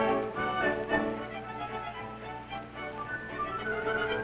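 Orchestral film-score music led by strings, playing sustained notes.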